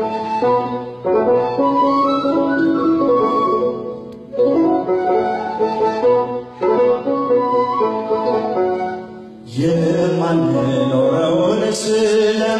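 Washint (Ethiopian end-blown bamboo flute) playing a hymn melody in phrases, with short breaks between them. Near the end the sound grows fuller and brighter.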